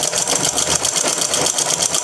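Domestic sewing machine running steadily, stitching cloth with a rapid, even mechanical rhythm.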